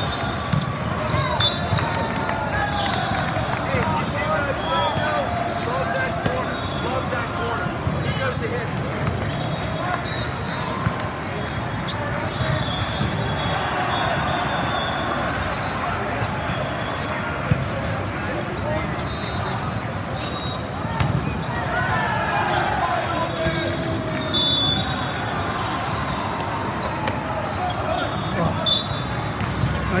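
Volleyball tournament ambience in a large hall: many overlapping voices of players and spectators talking and calling out, with balls being hit and bouncing on the courts. Short high-pitched tones come through now and then.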